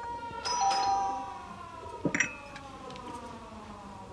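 Two-tone ding-dong doorbell chime about half a second in, ringing and fading, over soft sustained background music. A short sharp clink follows about two seconds in.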